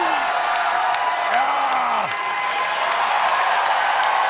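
Studio audience laughing and applauding at a joke, a steady wash of clapping mixed with scattered voices.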